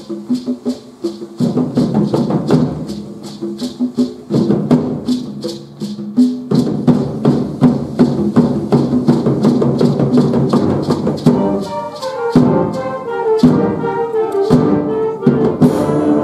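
A school concert band playing: a fast, even percussion rhythm over low held chords. From about eleven seconds in, higher held wind notes take over, with a few low drum hits about a second apart.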